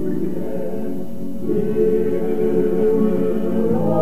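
Choir singing long held chords in a church praise song. The chord changes about a second and a half in, and the harmony rises to higher notes near the end.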